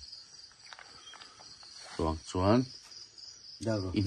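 A steady, high-pitched insect chirring, typical of crickets, runs unbroken throughout. A voice speaks briefly about halfway through and again near the end.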